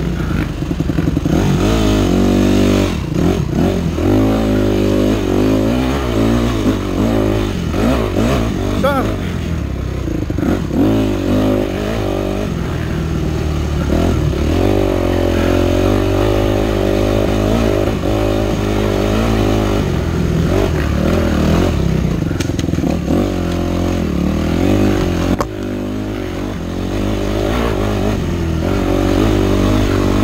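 Yamaha 250F four-stroke single-cylinder dirt bike engine, heard close up from the bike, revving up and down repeatedly as it is ridden through the trail.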